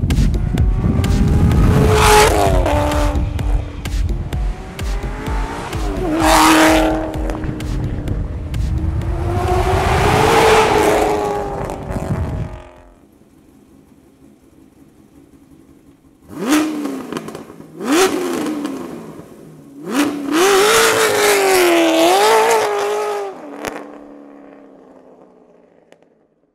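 Katech 427 cu in LT1 V8 in a Corvette Grand Sport, through Corsa exhaust: three revs rising and falling as it accelerates, over electronic music with a heavy beat that stops about halfway. After a short quiet stretch come two quick throttle blips, then a longer pull whose pitch climbs and dips, fading as the car drives away.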